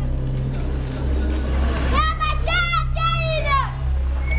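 A child shouting a chant in a very high, strained voice, two shouted phrases about two seconds in, over the noise of a group of people and a low steady hum.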